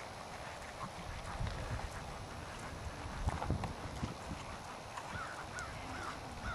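A ridden dressage horse's hoofbeats on the arena footing: a run of dull, fairly quiet thuds.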